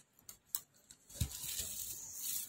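An LCD panel being handled and set down on plastic bubble wrap. A few light clicks come first, then a soft thump a little past a second in, followed by crinkling of the plastic.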